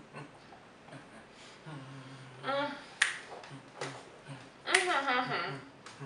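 Two people making muffled humming and groaning sounds through closed mouths full of Sriracha hot sauce, twice in the second half. A few sharp snap-like clicks come in between; the loudest is about three seconds in.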